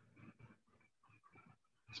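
Near silence: faint room tone, with a few faint, brief indistinct sounds.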